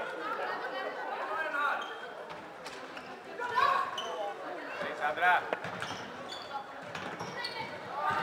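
Players calling and shouting in an echoing sports hall, mixed with short sharp clacks of floorball sticks and the plastic ball on the court.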